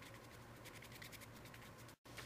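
Faint scratching of a paintbrush spreading Mod Podge over painted cardboard, a run of quick light strokes.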